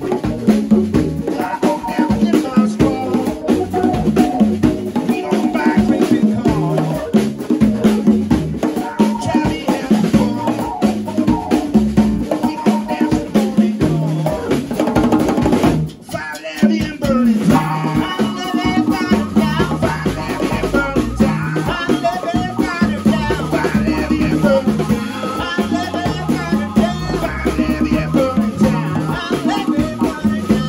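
Live band playing an upbeat groove on electric guitar, bass, drums and congas. About halfway through the band stops for a moment and comes straight back in, with a held high note sustained over the groove after that.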